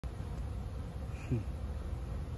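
Honeybees buzzing in a steady hum as they fly in and out of the hive entrances, heavy flight traffic during a strong nectar flow. A brief buzz that drops in pitch comes just past halfway, louder than the rest.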